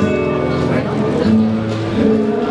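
Flamenco guajira music: acoustic guitar playing under a singer's long held notes.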